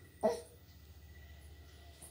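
A seven-month-old baby makes one brief, sharp vocal sound about a quarter of a second in, over a faint steady low hum.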